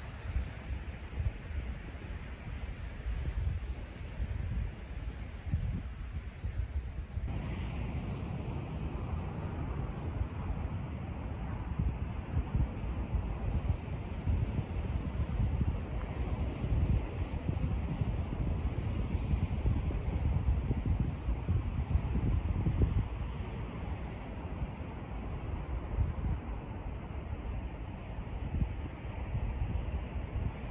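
Wind buffeting the microphone: a gusty low rumble that rises and falls throughout, growing fuller about seven seconds in.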